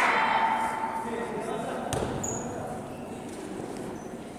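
Echoing gymnasium room noise that fades, with a single basketball bounce on the court about two seconds in.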